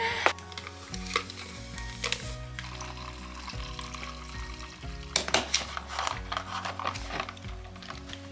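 Hot water poured from a kettle into a plastic cup to make a chai latte, a hissing splash of liquid, with a sharp knock a little past five seconds, over background music.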